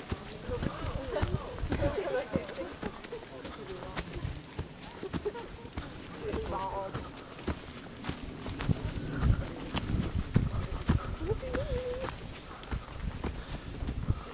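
Footsteps through dry fallen leaves on a dirt path, a quick run of short scuffs and crunches, with faint, indistinct voices of other people walking along.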